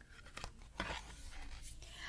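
Stiff cardboard pages of a board book being turned and handled: a soft rustle with a few light taps.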